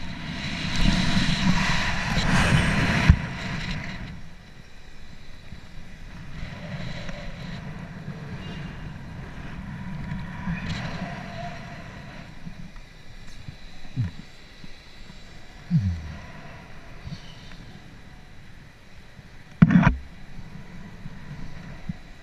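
Wind rushing over a helmet-mounted camera's microphone during a rope jump: a loud rush through the first few seconds of the fall, then a lower, steady buffeting as the jumper swings on the rope. A few short knocks break through later, the loudest near the end.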